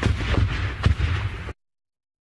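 Gunfire and explosions in combat: a heavy low rumble with two sharp bangs about half a second apart, then the sound cuts off abruptly to dead silence about one and a half seconds in.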